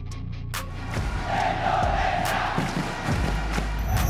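A stadium crowd cheering over background music. The cheer swells about a second in and dies away around three seconds, when the music's bass comes in heavier.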